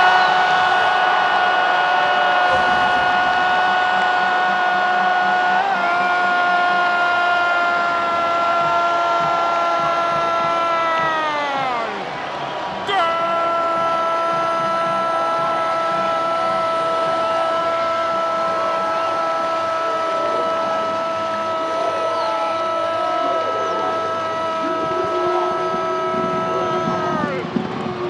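A Spanish-language football commentator's long goal cry, 'gooool', held on one steady high note for about eleven seconds and sliding down in pitch at the end. After a short breath comes a second held note of about fourteen seconds, which also slides down to finish.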